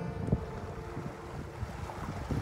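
Wind buffeting the microphone with a low rumble, while the last guitar chord rings out and fades. A single sharp knock comes about a third of a second in.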